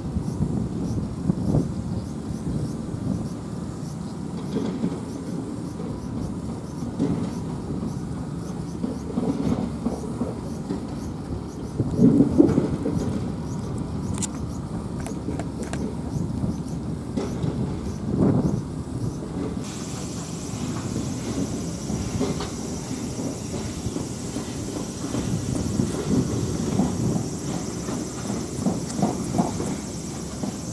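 Steady low rumble of vehicle noise, swelling louder about twelve seconds in and again around eighteen seconds, with a faint rapid ticking over it for the first two-thirds.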